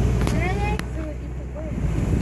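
Low steady rumble of the safari ride truck's engine, with a person's brief rising voice sound about half a second in and a click just after.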